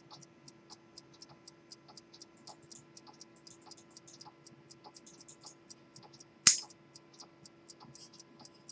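Circa-1850 D. Delachaux Locle pocket watch's Swiss lever escapement ticking steadily, about four ticks a second, over a steady low hum. One much louder sharp click comes about six and a half seconds in.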